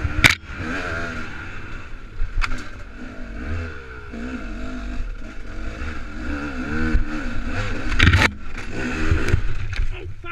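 A 250-class enduro dirt bike's engine revving up and down over rough single track, its pitch rising and falling with the throttle, with hard knocks from the bike and rider hitting the terrain just after the start and, loudest, about eight seconds in as the rider goes down.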